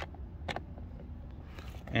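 A hand screwdriver driving a screw into a car door trim panel: a few faint sharp clicks as the screw is turned, over a low steady hum.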